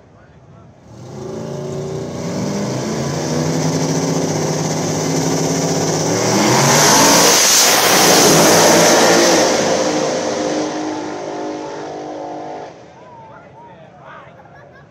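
Two small-tire no-prep drag cars launching side by side at wide-open throttle, their engines climbing in pitch as they run down the track. They are loudest as they pass close by about seven to eight seconds in, then fall away sharply about a second before the end.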